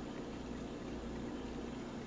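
Quiet, steady indoor background noise: a low hum with a faint hiss, and no distinct events.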